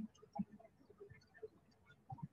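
Faint, irregular light clicks and soft knocks over a quiet room background.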